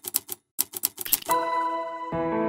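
A typewriter-style key-click sound effect: a quick run of sharp clicks with a short break, as the logo's letters appear. About a second and a half in it gives way to a sustained chiming musical sting.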